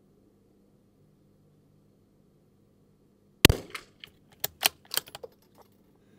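A Sako Quad Range .22 LR bolt-action rifle fires one shot about three and a half seconds in. It is followed over the next two seconds by a quick run of lighter metallic clicks as the bolt is worked to eject the case and chamber the next round.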